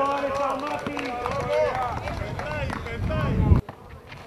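Several high-pitched young voices shouting and calling out over one another. Near the end a loud low rumble swells and cuts off abruptly.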